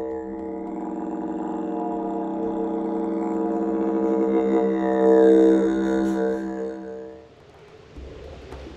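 Intro music built on a didgeridoo drone, one held note with shifting overtones, swelling slightly and then fading out about seven seconds in.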